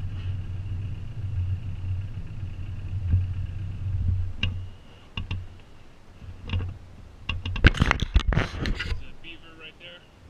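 A small boat motor hums steadily with a faint high whine and cuts off about four and a half seconds in. Scattered knocks and clicks of fishing gear being handled in the boat follow, then a loud burst of rattling and clicking as a baitcaster cast is made, with a short run of reel clicks near the end.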